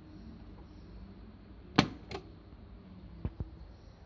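Piano-key push buttons on a Triglav 62A valve radio clicking as they are pressed: a sharp double click a little before the middle, then two lighter clicks about a second later, over a faint low steady hum.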